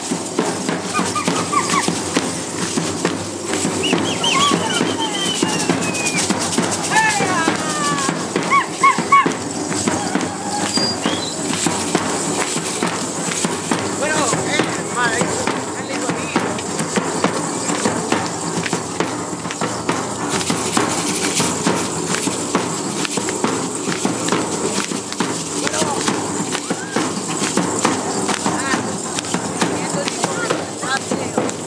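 Matachines dance in the street: a dense, continuous rattling and shuffling from the dancers' steps and rattles, with people's voices and dance music mixed in.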